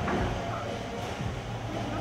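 Ambience of an indoor shopping arcade: a steady low hum with distant, indistinct voices in the background.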